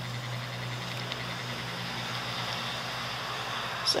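Steady wash of road traffic noise, heavy enough that it is called terrible.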